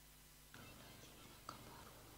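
Near silence, then a faint breath close to the microphone starting about half a second in, with a small click near the middle.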